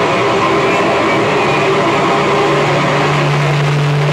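Loud live heavy rock band holding a sustained, distorted electric guitar and bass drone with no drums or cymbals; a held low bass note grows stronger about two and a half seconds in.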